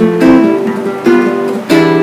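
Nylon-string classical guitar strumming seventh chords in C major, a new chord every half second to second. Near the end it lands on a ringing E minor seventh, the mediant, in place of the C tonic: a deceptive cadence.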